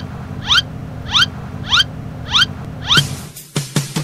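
Six short rising chirps, evenly spaced a little over half a second apart, over a low steady hum. A few sharp clicks follow near the end.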